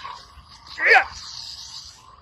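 Lightsaber swing sound effects: a hissing whoosh as the blade is spun. About a second in comes a short, sharp vocal yelp, the loudest sound here.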